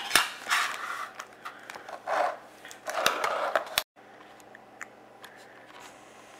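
Clear plastic clamshell packaging being handled, crinkling and scraping in several bursts with a click at the start. About four seconds in the sound cuts off abruptly to faint room tone.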